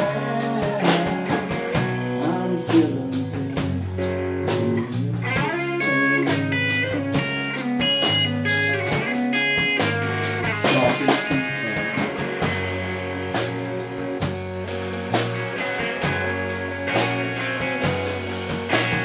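Live rock band playing an instrumental break with no singing: electric guitars over bass and a steady drum-kit beat. A line of short high lead notes stands out in the middle.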